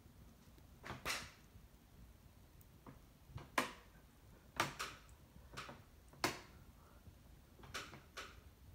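Faint, scattered clicks and soft knocks at irregular intervals over quiet room tone.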